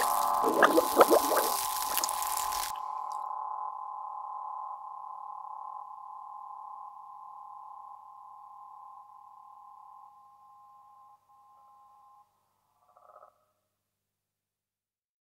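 Closing of an experimental electronic soundtrack: a dense layer of hiss and clicks cuts off abruptly under three seconds in, leaving a cluster of steady high tones that slowly fade out over about ten seconds, with a brief flutter near the end.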